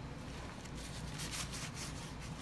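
Paper towel rustling and crinkling as it is picked up and bunched in a gloved hand, a run of soft crackles in the second half, over a low steady hum.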